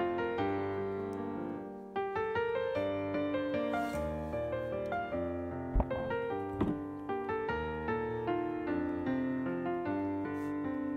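Background piano music, a run of single notes that ring and fade. Two brief low thumps sound about six seconds in.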